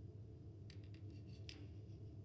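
Near silence: a low steady room hum, with a few faint clicks about a third of the way in and a sharper single click past the middle.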